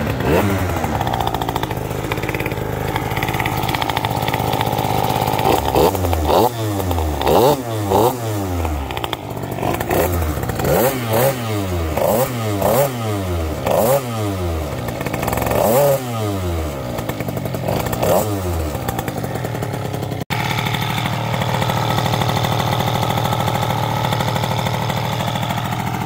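Aprilia SR50R scooter's race-built two-stroke engine, with a high-revving cylinder kit and Yasuni exhaust, idling after a fresh start. Between about six and eighteen seconds in it is blipped a dozen or so times, each a quick rev up and drop back. It then settles to a steady idle, idling quite nicely.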